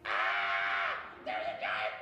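A person calling out in a high, held voice: a long "ah" that drops in pitch and stops about a second in, then a second long call at the same pitch.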